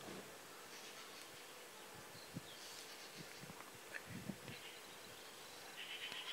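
Near silence: faint background hiss with a few soft, short ticks around the middle.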